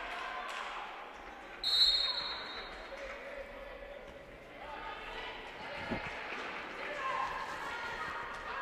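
Live futsal play in a sports hall: the ball being struck and bouncing on the court floor, with players' voices calling across the echoing hall. A short, shrill high-pitched tone cuts in about two seconds in, and there is a sharp knock of the ball near the end.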